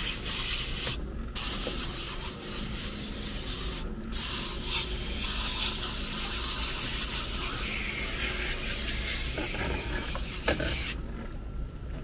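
Supco Portablaster electric coil-cleaning sprayer pumping water out through its wand onto a dirty evaporator coil: a steady hiss of spray. It breaks off briefly about one and four seconds in, and stops about eleven seconds in.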